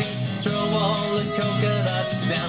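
Upbeat song with plucked guitar accompaniment and a sung vocal line.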